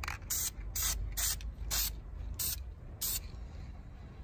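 Aerosol spray can of engine enamel primer spraying in about seven short bursts of hiss, laying down a first coat of primer.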